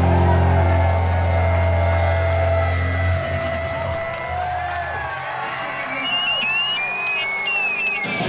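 A live rock band's last chord ringing out and fading over the first few seconds, then an audience cheering with whistles near the end.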